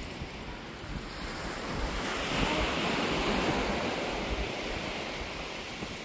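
Sea surf washing on the beach, with wind buffeting the microphone; the rushing grows louder from about two seconds in and eases off again.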